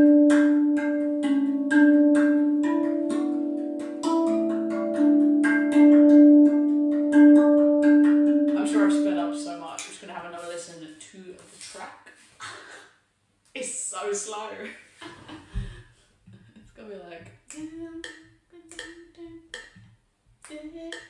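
RAV steel tongue drum played by hand: long ringing melody notes with light ghost-note taps about four a second filling in the groove. About halfway through this gives way to quick, garbled voice and scattered taps, as if the footage were sped up.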